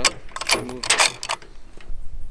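A 6.5 PRC rifle's action being worked by hand after a shot: a quick run of metallic clicks and clacks over about a second and a half.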